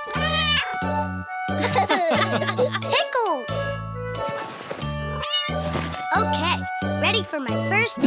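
Upbeat children's cartoon music with a bouncy bass line and a jingly melody, with a cartoon child's voice and a kitten's meow over it.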